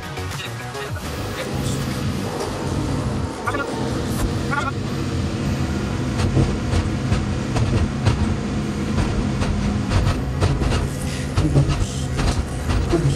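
DEVELON excavator's diesel engine running steadily under hydraulic load as the upper structure swings and the boom lowers the bucket, heard from the cab, with background music over it.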